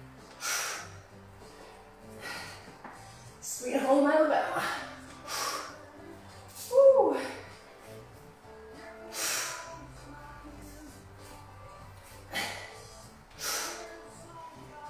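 Sharp, forceful breaths from a woman lifting a barbell through clean-and-press reps, one every two to three seconds, with a short falling vocal grunt about seven seconds in. Faint background music underneath.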